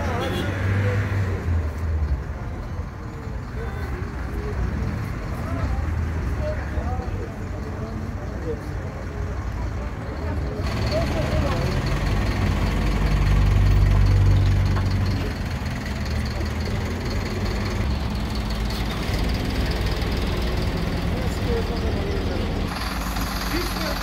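Street noise: scattered voices over a steady low rumble of traffic and engines. The rumble swells to its loudest about halfway through, then eases back.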